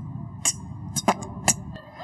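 Beatbox mouth percussion: a few short, sharp spitting 'b' and 't' pops made with the lips and tongue, about half a second apart, as a first try at the beatbox kick and snare sounds.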